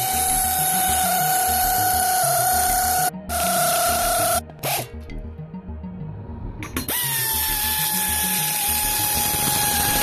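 Power drill with a socket bit driving lag screws through a steel frame bracket into a log. The drill's whine runs steadily for about three seconds, stops briefly, and runs again for about a second. After a pause of about two seconds it runs again to the end, starting a little higher and settling lower. Background music with a steady beat plays underneath.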